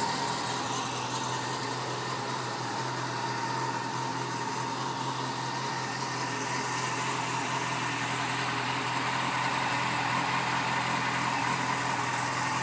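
A 2005 Yamaha FZ6's 600cc fuel-injected inline-four engine idling steadily at an even pitch.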